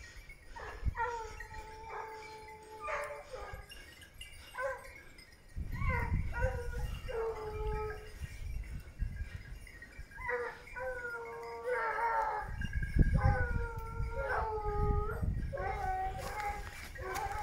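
Hunting hounds baying on a wild boar's trail: long, drawn-out bays, one after another.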